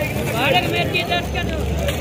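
Busy outdoor street-market ambience: people talking nearby over a steady low rumble of traffic.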